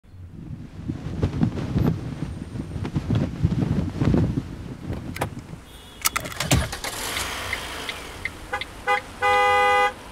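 A flag flapping in the wind with gusty rumbling, then a seatbelt buckle clicking shut, street traffic noise, and a car horn: a few short toots followed by one long, loud blast near the end.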